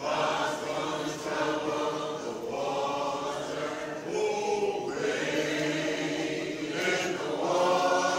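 A group of voices singing together in long held notes.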